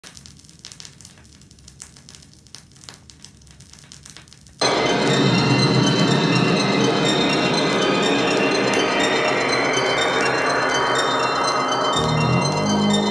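Vinyl LP on a turntable: a few seconds of faint surface crackle and clicks from the lead-in groove, then the recorded music starts abruptly and loud, about four and a half seconds in.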